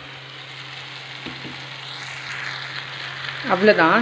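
Onion-tomato masala sizzling steadily in a kadai, the hiss swelling a little as raw prawns are tipped in and stirred with a metal skimmer.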